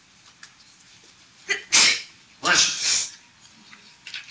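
A person sneezing twice in quick succession: a sharp sneeze about a second and a half in, then a second, longer one just after it.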